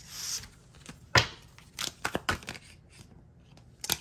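Tarot cards being handled as a card is drawn and laid on the spread: a brief sliding hiss, a sharp snap about a second in, then a few lighter taps and flicks.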